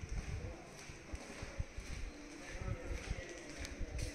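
Footsteps on a hard floor mixed with the handling thumps of a hand-held phone being carried, coming as irregular low knocks, thickest in the first couple of seconds and again near the end.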